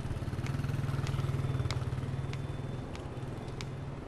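A motorbike engine running as it rides past, loudest in the first half and fading after about three seconds.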